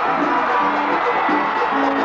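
Vallenato music played live, led by a diatonic button accordion playing a run of steady, rhythmic notes.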